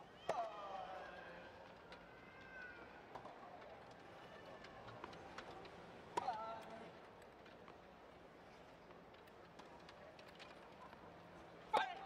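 Tennis ball strikes on a hard court in a wheelchair tennis point: three sharp hits, each about six seconds apart, with fainter clicks in between. Each hit is followed by a brief squeal that falls in pitch.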